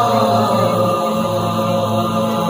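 A boys' vocal group singing together into handheld microphones, amplified through a PA system, holding long sustained notes.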